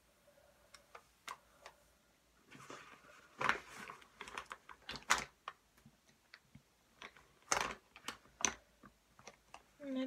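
Makeup cases and tools being handled: irregular light clicks and taps, the sharpest about three and a half, five and seven and a half seconds in.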